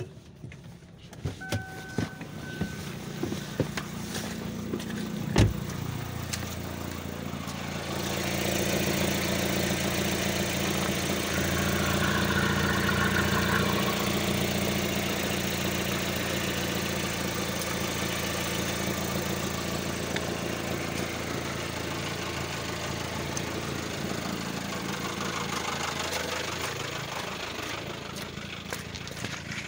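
KIA Sportage's 2.0-litre G4GC petrol four-cylinder engine idling steadily. It becomes louder and fuller from about eight seconds in, heard up close in the engine bay. A short beep comes early on, and a sharp click about five seconds in.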